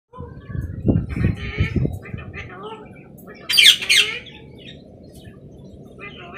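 Alexandrine parrot calling: soft chattering notes in the first two seconds, then one loud, harsh squawk about three and a half seconds in. A few low thumps come in the first two seconds.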